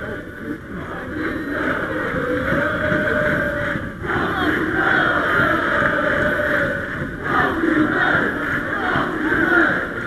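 A stadium crowd of football supporters singing and chanting together, many voices mixed into one loud sound with long held notes. It drops briefly about four seconds in and again near seven seconds.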